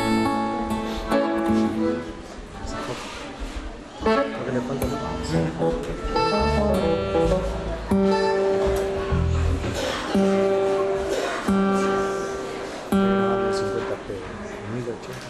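A live band playing, with acoustic guitar strumming over bass. Long held notes come in phrases of a second or two, each starting and stopping sharply.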